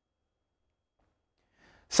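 Near silence, then a faint intake of breath about one and a half seconds in, just before a man's voice starts speaking at the very end.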